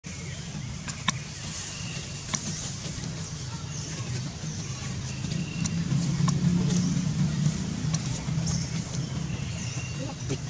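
Steady low rumble of a motor vehicle, louder about six to seven seconds in, with a few sharp clicks and faint high chirps over it.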